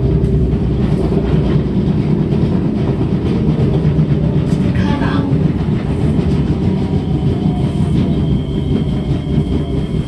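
Kawasaki/Sifang C151A metro train running and slowing into a station, heard inside the carriage: a steady rumble of wheels on rail, with the knocking of its badly flat-spotted wheels. As it brakes, a short falling tone comes in after about six seconds, then a thin high whine holds near the end.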